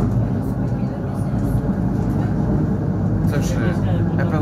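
Steady low rumble of an ER9-series electric multiple unit running, heard from inside a passenger car. A voice comes in near the end.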